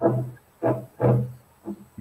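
A man's low voice making four short sounds on one flat, unchanging pitch, with brief pauses between them.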